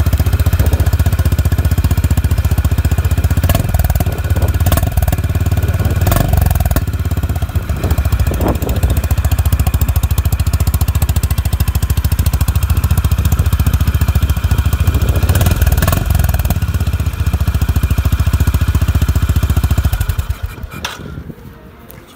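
Honda H'ness CB350's single-cylinder engine idling steadily through its stock chrome exhaust, then shut off near the end.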